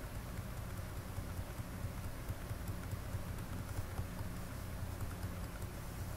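Low steady electrical hum under faint background hiss, with a few very faint clicks.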